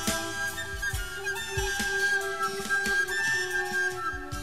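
Instrumental passage of a 1970s Italian pop song: a sustained melody line over bass and a steady drum beat, with no singing.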